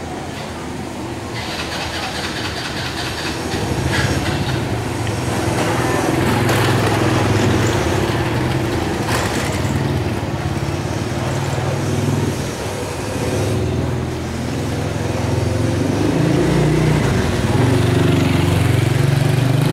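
Small motor scooter engine running steadily nearby, getting louder about four seconds in and holding at that level.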